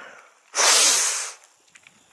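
A single loud breath from a person, a rush of air about a second long that starts about half a second in, with no voice in it.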